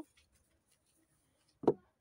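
A pause of near silence, broken near the end by one brief, sharp sound.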